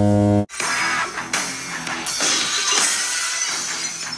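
A steady, low error buzzer cuts off sharply about half a second in, and loud rock music with guitar starts right after it.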